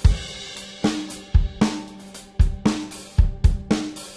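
Background music: a drum-kit beat of bass drum, snare and hi-hat, with a cymbal crash at the start.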